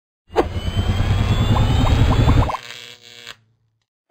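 Electronic logo sting: a sudden swell of noisy sound with a deep rumble and a faint rising whine, a quickening run of six short beeps, then it breaks off about two and a half seconds in, leaving a fading tail that dies away before the end.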